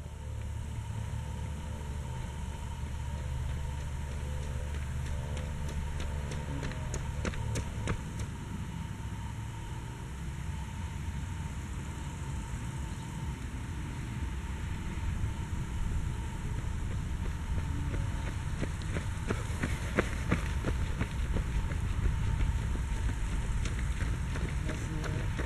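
Outdoor ambience with a steady low rumble, then the footsteps of runners on the asphalt lane growing louder over the last few seconds as they approach.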